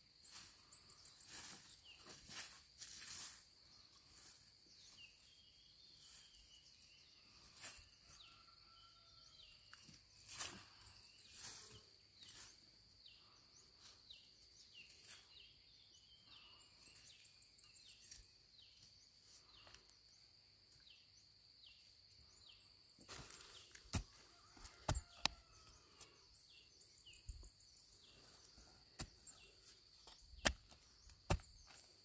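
Long-bladed knife chopping and scraping into dry, crumbly soil while sweet potatoes are dug out by hand: scattered soft strikes, with a louder cluster of strikes near the end. A steady high insect buzz runs underneath, with a string of short chirps in the first half.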